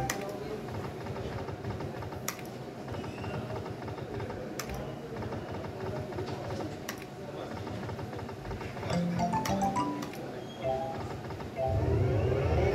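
Casino slot machine being played: sharp clicks about every two seconds over steady background noise, then a short run of stepped electronic jingle tones near the end.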